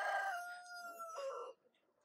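A rooster crowing: the drawn-out end of the crow, one long held note that falls slightly and stops about one and a half seconds in.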